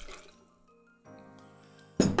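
Gin poured from a shot glass into a cocktail shaker, a brief trickle and drip, under soft background music with long held notes. A sharp knock at the very end as the glass gin bottle is set down on the wooden table.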